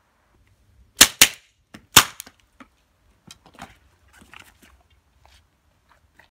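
A gun fired three times, two shots in quick succession and a third under a second later, followed by fainter knocks and clatters.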